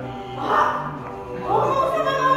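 Music playing, with an Akita barking twice: once about half a second in and once near the end.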